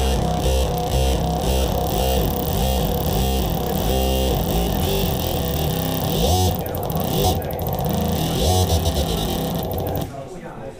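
Yamaha Montage synthesizer playing a heavy, rhythmic dub rock bass patch, its notes gliding into one another (portamento) as the Super Knob, driven by a foot controller, sweeps the filter and the glide. The playing stops suddenly at the end.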